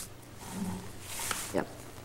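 A pause in a meeting: quiet room tone with a steady low hum, a soft breathy murmur in the middle, and a brief spoken "yep" near the end.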